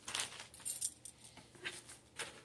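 A plastic bag of loose plastic model-kit parts being handled, giving a few short rustles and small clinks.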